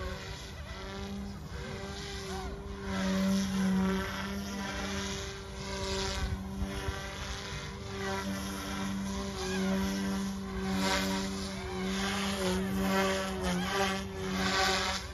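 Mikado Logo 200 electric RC helicopter in flight: a steady rotor hum with motor whine. It swells and bends in pitch several times as the blades load up through manoeuvres.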